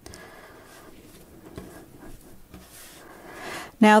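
Faint rubbing and soft sticky handling as hands fold and press a wet sourdough boule on a floured counter during pre-shaping.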